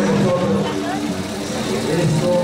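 People's voices talking in a crowd, several at once, with a steady low hum underneath.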